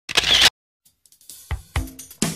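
Start of a music soundtrack: a brief loud burst of noise, a short silence, then a drum beat with deep kick-drum hits coming in about a second and a half in.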